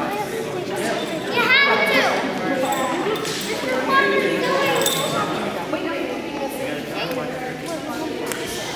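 Indistinct chatter from spectators, children's voices among them, echoing in a large gymnasium.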